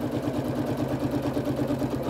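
Domestic electric sewing machine stitching steadily at a moderate speed, its needle mechanism running in a rapid, even rhythm as it sews binding through the quilt layers.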